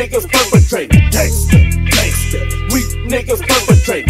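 Hip hop beat with a deep, sustained 808 bass that slides down in pitch on several hits, plus a repeating snare and hi-hat pattern.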